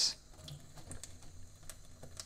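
Faint thin stream of tap water running into a stainless-steel sink as a chanterelle mushroom is rinsed under it, with a few light ticks.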